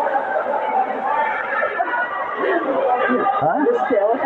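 Several voices talking and calling out over one another in a large sports hall, a steady mix of chatter with no single voice standing out.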